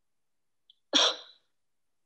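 A single short, breathy laugh about a second in, sharp at the start and fading within half a second.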